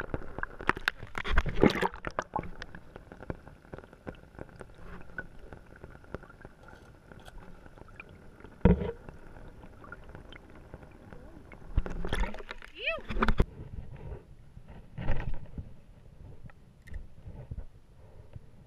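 Muffled water sloshing and gurgling around a camera dipped into shallow water, broken by a few louder splashy bursts: in the first two seconds, about nine seconds in, around twelve to thirteen seconds, and about fifteen seconds in.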